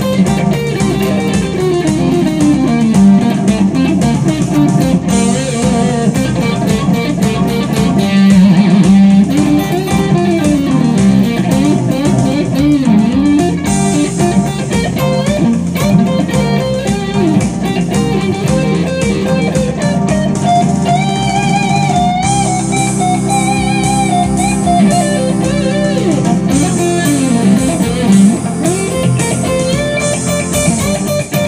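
Fender Stratocaster-style electric guitar played through an amp, taking a lead solo with bent notes and vibrato over a rock backing track.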